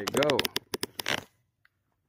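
A man's voice says one short word, with several sharp clicks mixed into it during the first second, then near silence.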